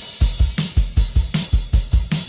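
Music: a held chord dies away at the start, then a drum kit comes in alone with a steady kick-drum beat, roughly two to three hits a second, with snare and cymbal.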